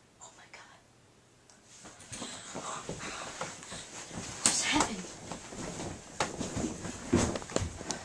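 Hushed whispering voices with rustling, starting about two seconds in after a quiet start, broken by a few sharp clicks and knocks.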